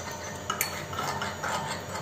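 A lemon piece squeezed by hand into a glass of drink, juice dripping in, with a few short, soft bursts of noise and light knocks of fingers against the glass.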